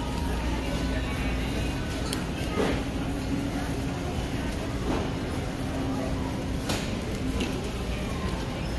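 Background sound of a large grocery store: a steady low hum with indistinct voices, and a few light clicks.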